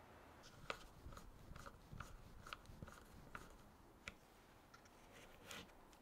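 Faint, irregular small clicks and crunches of a hand screwdriver turning small screws into bronze hardware on an oak box.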